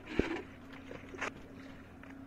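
A small boat's engine running with a steady hum as it rides choppy sea, with water slapping against the hull: a sharp slap just after the start and a smaller one about a second later.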